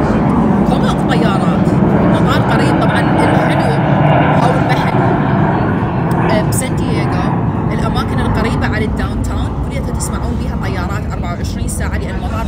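A loud, low rumble of a passing engine, strongest over the first half and then easing off, with background voices behind it. A few light clicks come in the second half.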